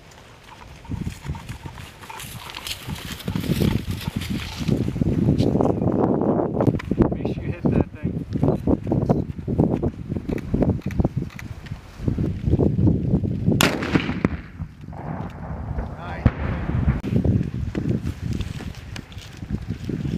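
Footsteps of several people walking through dry grass and brush, with boots crunching and the vegetation rustling in a dense, uneven stream. A single sharp crack comes about two-thirds of the way through.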